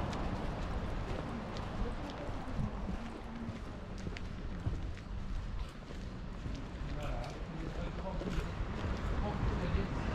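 Footsteps on stone paving while walking, with a low rumble of wind on the microphone and faint voices in the background.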